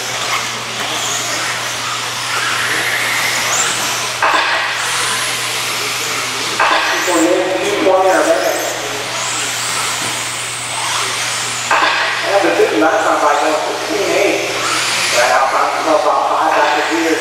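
Electric 4wd RC buggies racing, their motors whining high and sliding up and down in pitch as they accelerate and brake around the track, over a steady low electrical hum.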